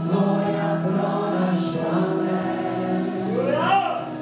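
Live worship music: several voices singing long held, chant-like notes with band accompaniment, and a rising-then-falling vocal glide near the end.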